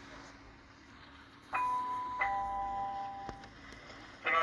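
A two-note ding-dong chime: a higher note about one and a half seconds in, then a lower note about 0.7 s later, both ringing on for over a second before fading.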